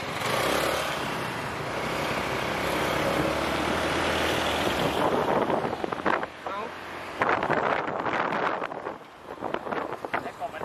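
Motorcycle riding through city traffic: steady engine and road noise for the first half, which turns uneven and choppy about halfway through, with voices coming in.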